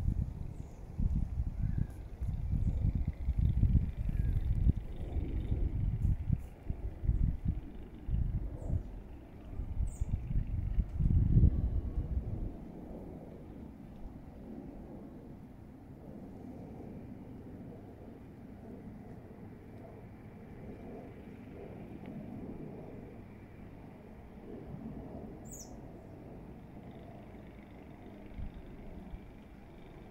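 Outdoor low rumble, gusty and irregular for the first twelve seconds, then quieter and steady. A few faint, short, high chirps from birds come through, twice near ten seconds in and once near the end.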